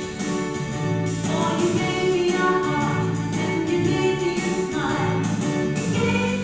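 A group of voices singing a hymn together with keyboard accompaniment, in steady sustained notes.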